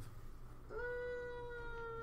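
A person's drawn-out, high-pitched "uhhh" of hesitation, held on one steady note for over a second and sinking slightly, starting about two-thirds of a second in.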